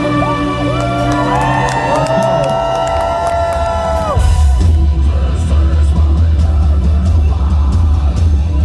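Live deathcore with a sustained synth backing and many overlapping voices from the crowd singing and yelling along. About four seconds in, the full band crashes back in with a heavy, loud low end of bass guitar and drums.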